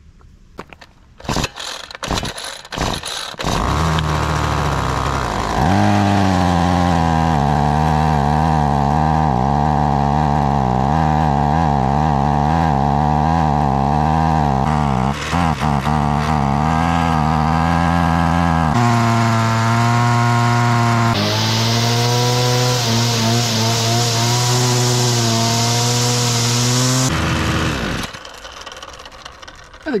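Ryobi 25cc two-stroke string trimmer pull-started with a few pulls, catching and idling with a wavering pitch. It is then revved up in two steps to high throttle for several seconds before dropping back near the end. The test run after the repair shows the trimmer working again.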